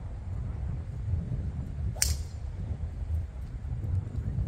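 TaylorMade SIM driver striking a golf ball off the tee: one sharp, ringing crack about two seconds in. Under it runs a steady low rumble of wind on the microphone.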